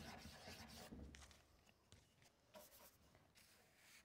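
Faint scratching of a charcoal stick drawing on paper, fading to near silence after about a second and a half.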